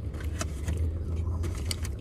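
A parked car's engine idling as a steady low hum, with scattered small crackles and clicks from eating crispy fried chicken and handling a paper food bag.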